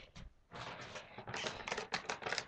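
Rustling and quick light clicks of hands handling small objects close to the microphone, starting about half a second in.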